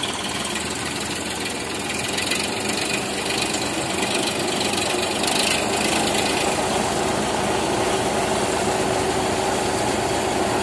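Sonalika 745 tractor engine running and driving a multi-crop thresher, whose drum and blower come up to speed: the steady machine noise gets louder over a few seconds around the middle, then holds steady as the thresher starts blowing out chaff.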